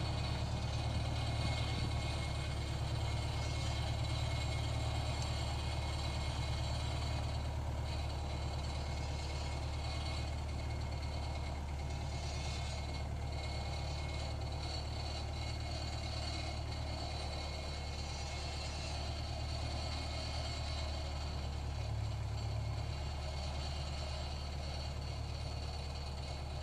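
Kubota M9000 tractor's four-cylinder diesel engine running steadily while its front loader pushes a pickup truck.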